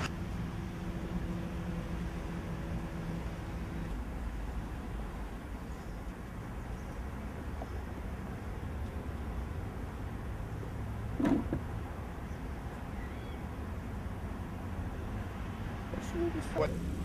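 Outdoor background rumble picked up by a camcorder's built-in microphone, steady and low, with a faint hum in the first few seconds and one brief sound about 11 seconds in.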